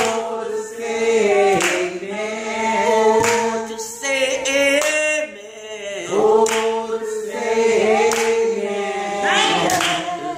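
A woman singing a gospel song a cappella in long, gliding held notes, with other voices joining, and a hand clap about every second and a half.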